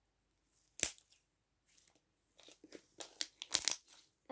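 Slime being squeezed and stretched by hand, giving one sharp crackle about a second in and then a run of small pops and crackles in the second half.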